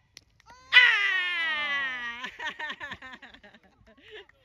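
A spectator's voice letting out one long drawn-out "ohh" that starts high and slides down in pitch over about a second and a half, at a shot on goal. Fainter, broken voices follow.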